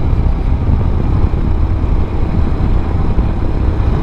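Royal Enfield Himalayan's single-cylinder engine running steadily at road speed, heard mixed with a steady low wind rumble on the microphone.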